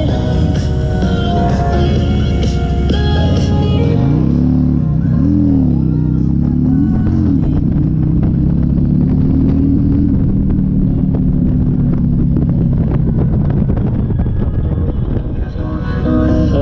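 A song plays from a Harley-Davidson Street Glide's fairing radio over its V-twin engine. About four seconds in the music drops away and the engine note rises and falls in pitch a few times, then holds steadier as the bike rides on. Music comes back near the end.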